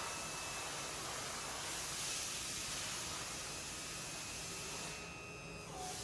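Steady faint hiss with a thin high whine from the ER DC powered roll manipulator's drive as its roll clamp jaws swing open. The hiss thins out briefly near the end.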